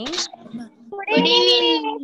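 A child's voice calling out one long, drawn-out sing-song greeting about a second in, heard through a video-call connection, after a short sharp sound at the start.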